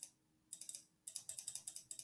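Quick, light computer clicks: a couple at first, then a denser run of several a second from about half a second in, each click stamping a cloud brush onto the digital canvas.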